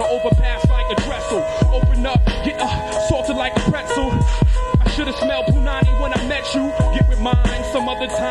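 Hip hop beat with a heavy kick drum and a rapper freestyling fast over it, taped off an FM radio broadcast.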